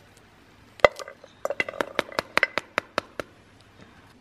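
Pomegranate seeds dropping into a stainless steel bowl: a quick, irregular run of small clicks and pings with a light metallic ring, starting about a second in and stopping a little before the end.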